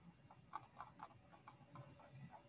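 Near silence, broken by a short run of about seven faint, irregularly spaced clicks starting about half a second in.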